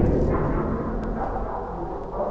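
Deep rumbling tail of a loud boom sound effect, dying away slowly.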